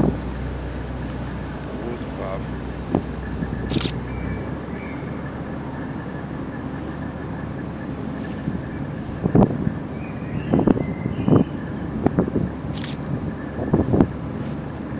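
Passenger ferry under way on the river, its engine and the passage through the water making a steady running noise. A low drone drops away about four seconds in, and voices come through faintly, mostly in the second half.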